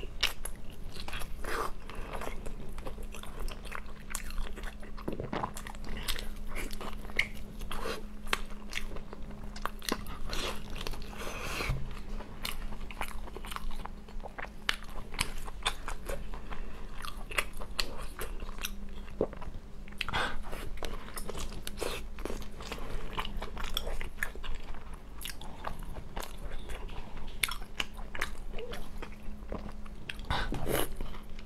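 Close-miked biting and chewing of fried dough buns glazed in chili oil: a continual run of short, crisp clicks and wet mouth sounds. A steady low electrical hum sits underneath.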